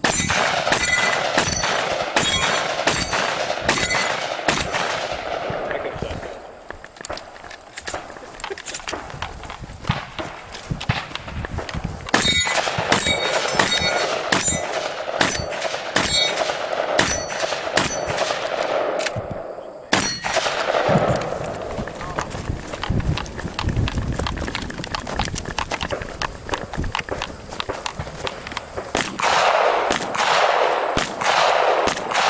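Strings of shotgun shots fired in quick succession, about two a second, with steel targets ringing after many of the hits. The shooting pauses for a few seconds twice along the way.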